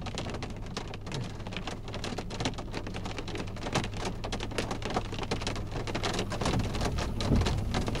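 Heavy rain drumming on a car's roof and windshield, heard from inside the car as a dense, irregular patter over a steady low hum. A low rumble swells near the end.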